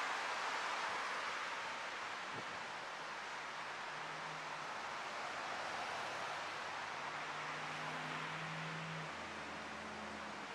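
Steady street traffic noise: an even hiss of passing cars, with a faint low engine hum from about four to nine seconds in.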